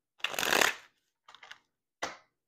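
Tarot cards being shuffled: one rustling burst lasting under a second, starting about a quarter second in, then a couple of short, softer rustles about a second and a half in.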